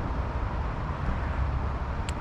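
Steady road-traffic noise: a continuous low rumble with hiss above it and no single passing vehicle standing out.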